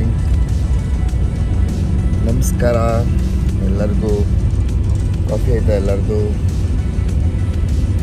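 Steady low rumble of a bus running on a wet road, heard from inside the cabin. Background music and a man's voice in a few short phrases sit over it.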